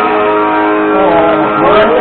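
Guitar strummed through a small battery amplifier, chords ringing steadily. A voice comes in over it about a second and a half in.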